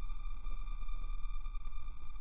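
Steady electronic drone: a low hum under several steady high tones, unchanging throughout.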